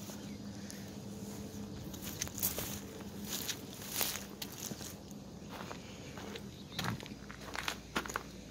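Footsteps through long grass and onto a gritty concrete slab, an irregular scatter of scuffs and clicks.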